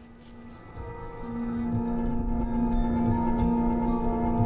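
Ambient live music of sustained drone tones, swelling in over the first second or two and then holding steady above a low rumble.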